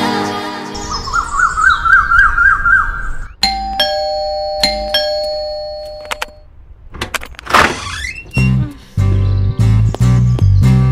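Two-tone doorbell chime, a higher ding then a lower dong struck about a second apart, ringing on for a couple of seconds. Before it a warbling electronic tone fades out; after it a whoosh leads into loud guitar-led film music near the end.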